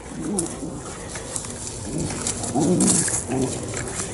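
Two dogs play-fighting, with short low growls and the rustle of their bodies in the grass.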